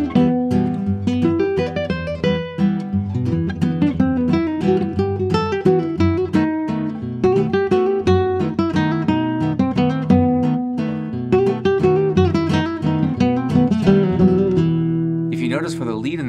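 Nylon-string classical guitar played fingerstyle in a gypsy jazz waltz: a melody of single-note arpeggios with slurs over bass notes and chords. Plucking stops near the end as a voice starts.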